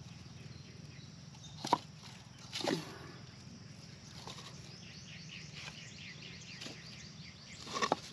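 Dry, empty coconut shells knocking against each other in a few light, separate knocks as a hand picks through a pile of them. A run of quick, high chirps sounds in the background partway through.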